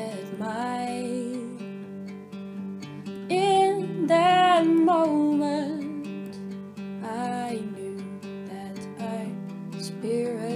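Song: acoustic guitar strumming with a sung vocal line over it, swelling loudest about three to five seconds in.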